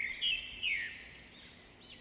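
Small birds chirping: a run of short high calls in the first second that fades away, and a few more near the end.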